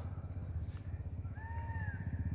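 A short animal call that rises and falls in pitch, about a second and a half in, over a steady low rumble.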